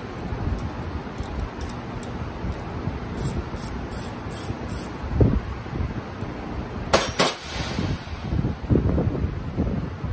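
Ratchet wrench working the clamp bolt on a turbocharger's housing, with light ratchet ticks and two sharp metal clinks about seven seconds in, over steady workshop rumble.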